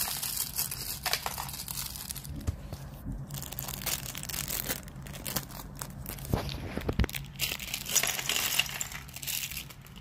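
Clear plastic packaging being crinkled and pulled, crackling irregularly throughout, with a few dull thuds around the middle.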